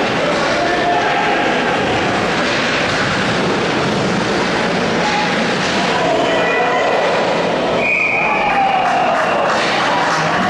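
Ice-rink game ambience at a youth hockey game: a steady, loud hall hum with spectators' voices throughout. About eight seconds in there is a short high whistle, followed by a falling shout as play stops at the net.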